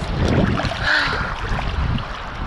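Sea water sloshing around a swimmer and a camera held at the water's surface, with a low rumble of wind and water on the microphone.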